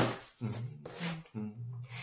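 Cardboard box being opened by hand: a sharp snap right at the start, then short scrapes of cardboard sliding and rubbing as the lid and inner flap are pulled open.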